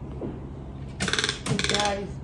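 Toco toucan giving two short, harsh rattling croaks back to back about a second in.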